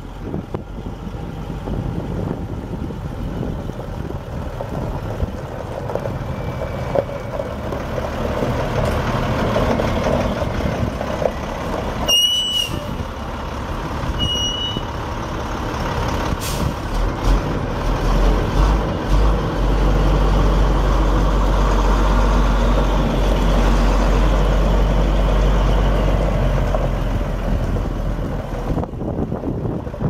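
2000 International 4900 propane truck's DT466E 7.6-litre inline-six diesel running as the truck is driven around, with a heavy low rumble swelling through the second half. Two short high beeps sound about twelve and fourteen seconds in.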